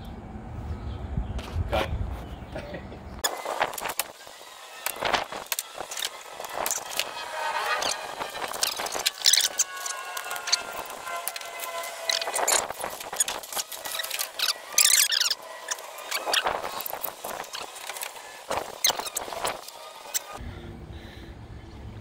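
Packaging being pulled off a pallet of solar panels: scraping and crackling of cardboard and plastic, with many sharp clicks and short squeaks, after a low rumble in the first few seconds.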